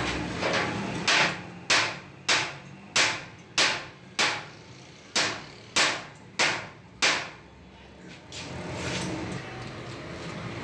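Hammer blows on the sheet-steel drum of a homemade concrete mixer: about ten sharp strikes, a little under two a second, with one short break midway, stopping about seven seconds in.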